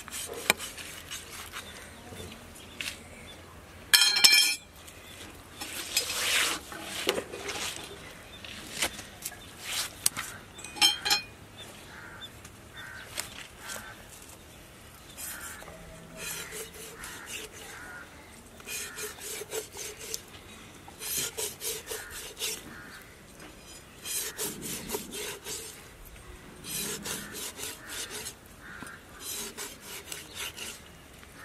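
Large knife blade scraping along the skin of a big fish on a stone slab, in runs of quick rasping strokes. A brief loud sound breaks in about four seconds in.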